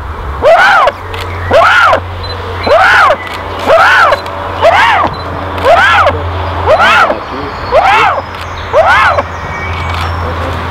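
A bateleur eagle calling over and over, nine loud calls about a second apart, each rising then falling in pitch. A steady low hum runs underneath.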